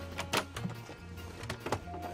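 Overhead luggage bin on an airliner being handled and a bag shoved into it: a few sharp clicks and knocks over a steady low hum, with music underneath.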